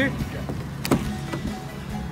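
A car door handled as someone gets into a car: one sharp click about a second in, over background music with steady held notes.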